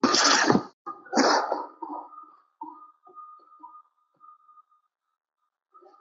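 Noisy, distorted audio from a participant's microphone over the online-classroom connection: two short crackling bursts, then a thin steady tone that breaks up and fades away over a few seconds.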